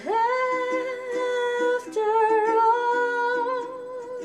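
A woman's wordless sung note, scooping up into pitch and held for about two seconds, then a second, slightly lower note held until near the end, over a steadily strummed Lanikai ukulele.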